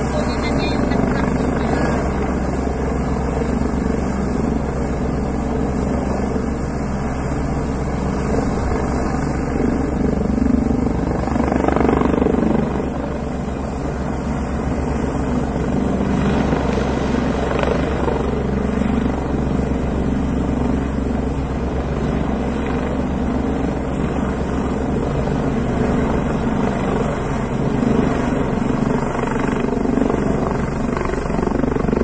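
Helicopter flying past, its rotor blades beating in a steady, rapid rhythm over the engine's continuous sound.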